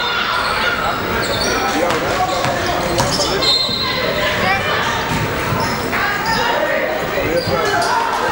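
Basketball bouncing on a hardwood gym floor, in repeated short thuds during live play, over background chatter and calls from players and spectators.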